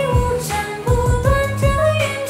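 A Chinese-style pop song with a female voice singing a sustained melody over a steady drum beat and backing instruments.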